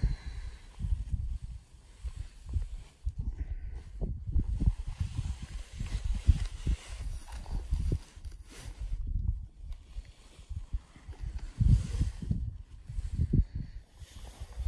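Wind buffeting the microphone in irregular gusts, heard as low rumbling thumps that rise and fall.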